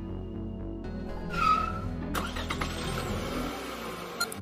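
Background music, joined in the second half by an edited-in whoosh sound effect: a brief squeal, then a noisy sweep rising in pitch.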